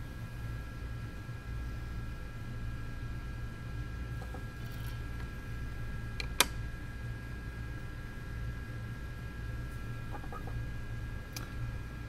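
A steady low hum with a faint high whine underneath, broken by one sharp click about six seconds in and a few fainter ticks.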